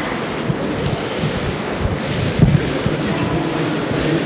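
A steady, loud rushing noise like blowing air, with a few dull low thumps about two and a half seconds in.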